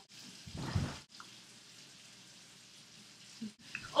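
Quiet room tone, mostly faint hiss, with one brief low muffled sound about half a second in.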